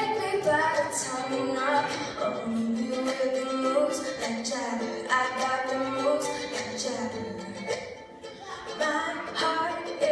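Ukulele strummed steadily while a young woman sings, a live acoustic pop cover. The song dips briefly near the end before picking up again.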